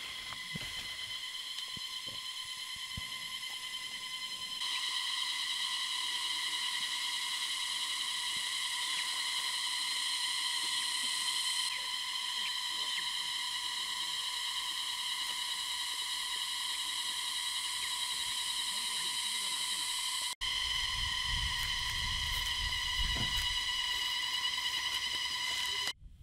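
Insects droning steadily in forest: a high-pitched buzzing chorus that holds one pitch and gets a little louder about five seconds in. Near the end a low rumble comes in under it for a few seconds.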